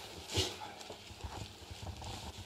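Faint handling sounds: a short rustle of wrapping paper about half a second in, with scattered light knocks, as a plaque is lifted from a box and unwrapped.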